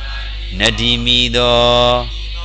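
A man's voice reciting in a slow, chanting tone: after a short pause it rises in pitch about half a second in, then holds one long drawn-out syllable. A steady low electrical hum runs underneath.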